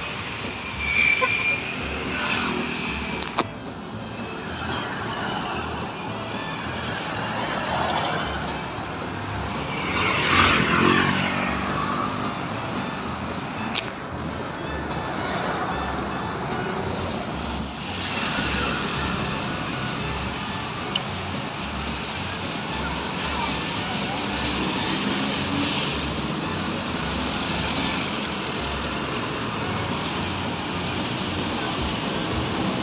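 City traffic going by, with steady noise from riding along the road. One vehicle passes louder about ten seconds in.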